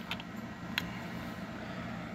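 Steady low room hum, with a couple of faint clicks as a chainsaw piston is moved by hand in its cylinder.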